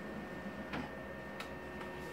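OKI white-toner colour laser printer running as a printed transfer sheet feeds out of its rear exit: a steady hum with a thin high whine, broken by three sharp clicks of the paper-handling mechanism.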